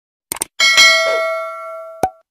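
Subscribe-button animation sound effect: a quick double mouse click, then a bright notification-bell ding that rings and fades, cut short by another click at the end.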